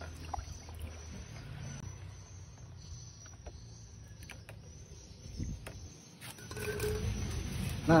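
Liquid fertilizer mix being stirred with a stick in a plastic tub, quiet, with a few light knocks of the stick. Near the end, a plastic bag rustles as a hand reaches into it.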